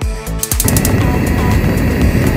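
Gas stove burner sound effect: a few quick clicks of the igniter about half a second in, then a steady rushing rumble of the flame burning, over background music.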